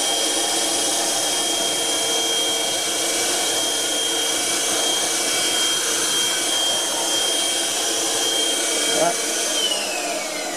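HoLIFE cordless handheld vacuum cleaner running steadily with a high motor whine, its crevice nozzle sucking up a liquid spill. Near the end it is switched off and the whine falls away as the motor winds down.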